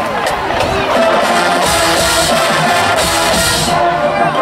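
High school marching band beginning the opening of its show: held instrument chords come in about a second in, joined by fuller low brass and cymbal wash a moment later, over the noise of the stadium crowd.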